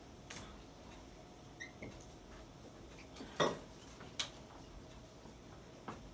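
Dry-erase markers clicking and tapping against a whiteboard over quiet room tone: a few short sharp clicks, the loudest about three and a half seconds in, and a brief high squeak about one and a half seconds in.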